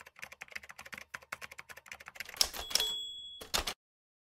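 Typewriter sound effect: rapid key strikes for about two seconds, then the bell rings once and a couple of heavier clacks follow before it stops.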